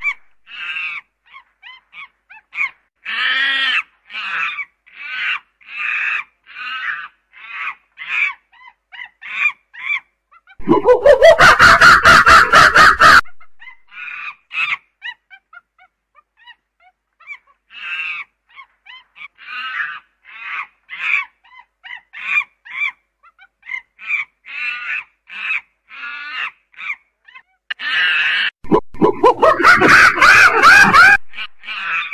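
A primate calling: runs of short pitched hoots, about two a second, broken by a loud scream that rises in pitch about eleven seconds in. The hoots then resume and build into another loud scream near the end.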